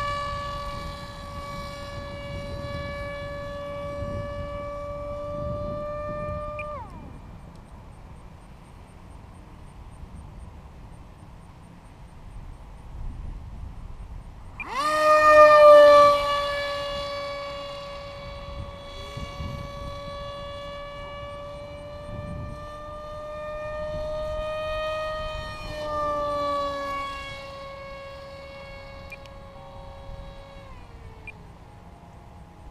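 Electric motor and propeller of a foam RC park-jet model plane giving a steady, high-pitched whine. About seven seconds in the throttle is cut and the whine glides down and stops. Near fifteen seconds it is throttled back up with a rising sweep, loudest as the plane passes close overhead, then runs on with a small change in pitch later.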